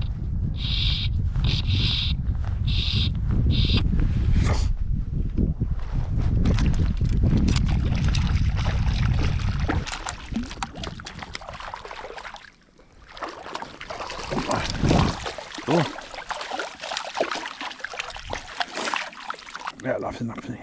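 Wind buffeting the microphone for the first half, with four short rasps near the start. After that come irregular water splashes and sloshing as a hooked sea trout is brought in to the landing net.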